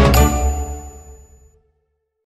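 Background music ending on a bright bell-like ding that rings out and fades to silence about one and a half seconds in.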